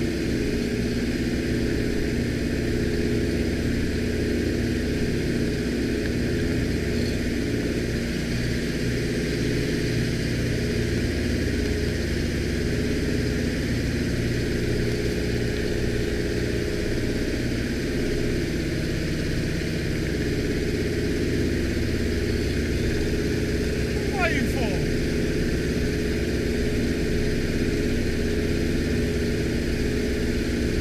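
Steady drone of a Nord Noratlas transport's twin Bristol Hercules radial engines, heard from inside the cabin. About three-quarters of the way through there is one short squeak that glides downward.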